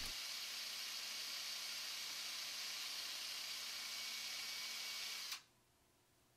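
Steady hiss of microphone and room noise with a faint low hum, which cuts off abruptly near the end.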